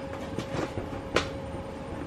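Handling noise as packing supplies are moved about: some scuffing, then a single sharp knock a little over a second in, over a steady faint hum.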